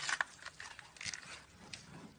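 Giant panda biting and chewing a peeled bamboo shoot: a loud crunch at the start, then several softer crunches.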